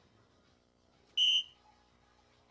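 Electronic soft-tip dartboard giving one short, high beep about a second in, the board's signal that a dart has landed and scored, here a single 15.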